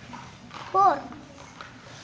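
A child's voice saying one short number word, falling in pitch, just under a second in, over faint room background.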